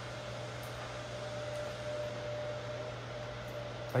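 Steady background hum and hiss of room noise, with a faint steady tone above it.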